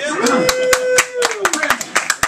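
A small audience clapping in scattered, uneven claps, with one voice calling out a long held note that drops in pitch and fades.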